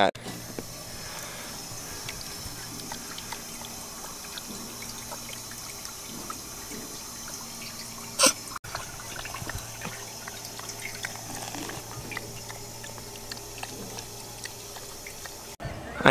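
Water trickling from the dog-bowl spout of a park drinking fountain into its metal bowl while a dog laps from it. A short, sharp burst of noise comes about halfway through.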